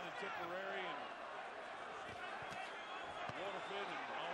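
Steady background crowd noise in a large arena, with a few faint voices calling out.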